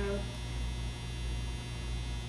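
Steady low electrical mains hum, unchanging throughout.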